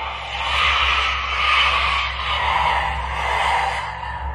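A steady rushing, hissing noise that swells and eases in slow waves, over a low constant hum.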